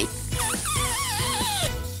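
Rubber balloon deflating after its neck is snipped: a hiss of escaping air and a wavering squeal that falls in pitch over about a second, stopping near the end.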